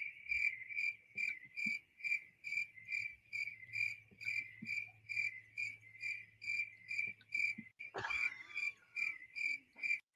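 A cricket chirping steadily in a regular run of short, high chirps, about two and a half a second.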